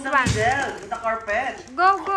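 Young children's high-pitched voices talking, with a short low thump about a quarter of a second in.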